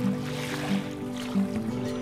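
Background music: held instrumental notes over a low line that changes pitch every half second or so.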